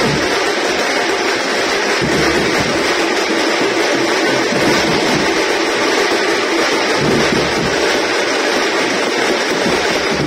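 A troupe of stick-beaten frame drums with a large bass drum playing together, a loud, dense, unbroken drumming.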